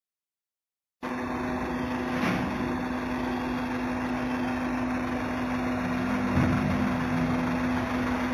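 Engine idling steadily, a constant hum over an even rumble, starting suddenly about a second in.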